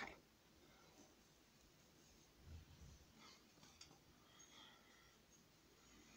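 Near silence, with faint rustling of a synthetic wig being pulled onto the head and adjusted.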